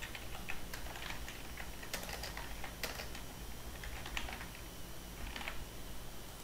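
Computer keyboard typing: a run of irregular key clicks that thins out near the end.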